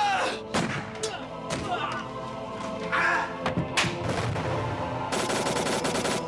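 Film soundtrack gunfire: several separate shots, then a rapid burst of fire near the end, with music underneath.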